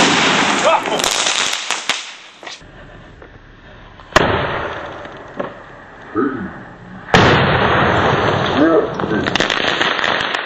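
Fireworks and firecrackers going off inside a model cathedral. A bang at the start is followed by a couple of seconds of hissing crackle, another bang comes about four seconds in, and a third about seven seconds in runs into a longer stretch of crackling with scattered pops.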